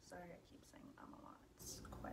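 Near silence with faint, half-whispered speech from a woman and a short hiss near the end.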